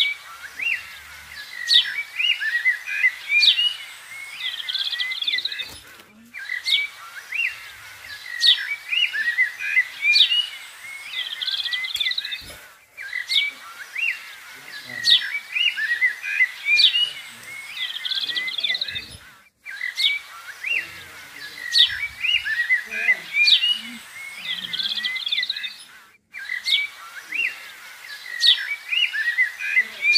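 Birdsong, many short chirps and whistled calls, in a pattern that repeats the same way about every six and a half seconds with a brief break between repeats: a looped birdsong recording.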